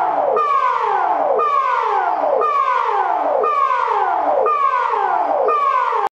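Emergency alert alarm tone: a synthesized siren-like sound that drops steeply in pitch, repeated about once a second.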